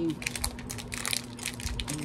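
Packaging crinkling and rustling in quick, irregular clicks as fingers work a small packet of rings open.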